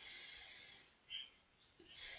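A man's short, faint breath drawn in, an airy hiss under a second long.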